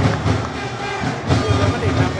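Stadium crowd of football supporters making noise together, with a regular low beat pulsing about two to three times a second under the voices.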